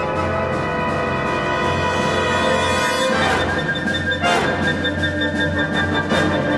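School concert band playing: held chords from woodwinds and brass. About halfway through the sound swells and changes, with a falling sweep about a second later.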